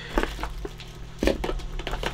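Clear plastic packaging tray being handled, giving a scattered run of short clicks and crackles, the loudest a little over a second in.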